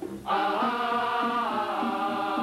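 Chanted vocal music: sung notes held and stepping from one pitch to the next, picking up after a brief pause right at the start.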